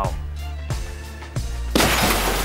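Background music with low bass notes, then near the end a sudden loud crash of a car windscreen shattering as a bowling ball is thrown through it.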